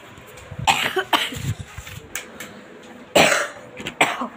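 A person coughing: two short coughs about a second in, then a louder cough near the end.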